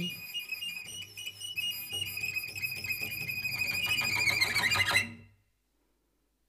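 Cello bowed in a long, held high tone that swells louder, then stops abruptly about five seconds in as the bow comes off the strings.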